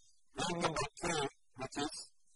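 Speech only: a lecturer talking in two short phrases.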